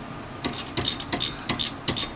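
A 3/8-inch socket ratchet clicking in quick, irregular runs as it works a 14 mm bolt on a rear brake caliper, starting about half a second in.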